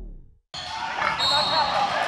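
Closing music fades out within the first half second, followed by a short moment of dead silence. Then loud, echoing gym ambience begins: room noise from a large weight room where people are working out, with indistinct squeaks and voices in it.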